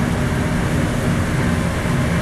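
Steady roar of a gas wok burner running under a wok of simmering soup, with no change in loudness.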